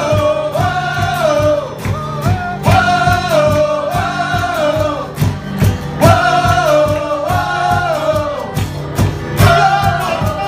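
Live worship music: a voice sings long, sliding phrases over a held keyboard chord, with a steady beat played by hand on a cajón.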